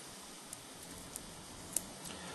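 Quiet, with a few faint, sparse ticks from a cassette deck's capstan flywheel being turned by hand, the drive belt removed, with the fast-forward/rewind idler spinning against it.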